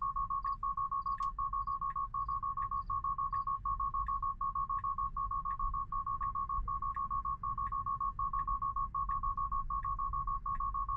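Tesla Model 3 Autopilot takeover alarm: a high electronic beep repeating rapidly, about four a second, without a break. It is the 'take over immediately' warning, sounded because Autopilot has lost the lane lines and demands that the driver steer. A low cabin rumble from the slowly rolling car runs underneath.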